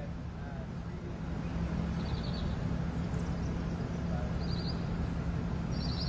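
Steady low mechanical rumble with a constant hum, swelling slightly about a second and a half in, like a running engine or motor. Faint high chirping comes through twice.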